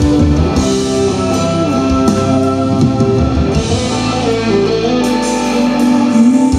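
Live band playing an instrumental passage on keyboard and guitar over drums, with held chords and regular cymbal splashes.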